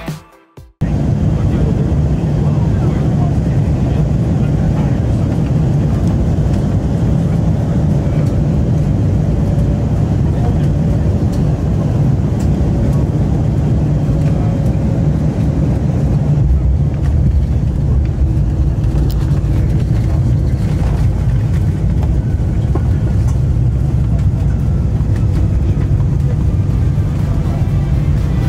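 Music cuts off under a second in, giving way to steady, loud cabin noise of an Embraer E195-E2 rolling along the runway: its Pratt & Whitney PW1900G geared turbofans and the rush of the airflow and wheels, heavy in the low end, with a faint steady hum.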